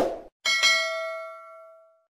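Subscribe-button sound effect: a quick click at the start, then about half a second in a bright bell ding with several ringing tones that fade away over about a second and a half.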